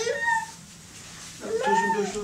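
A baby's high-pitched vocal sounds: a short squeal that rises at the start, then a longer babbling call about one and a half seconds in.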